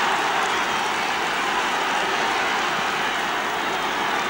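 Football stadium crowd cheering a goal: a steady wash of many voices with no single voice standing out.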